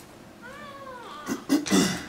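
A person's short pitched vocal sound that rises and then falls, then loud coughing close to a microphone.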